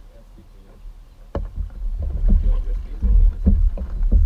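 Outrigger canoe paddling getting under way: quiet at first, then a sharp knock about a second and a half in and a run of uneven paddle strokes with a heavy low rumble beneath.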